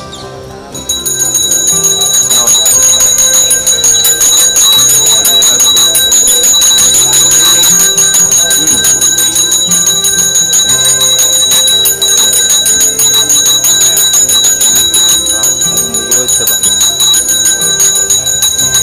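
Hand-held brass puja bell rung rapidly and without pause for the ritual worship, starting about a second in, with music underneath.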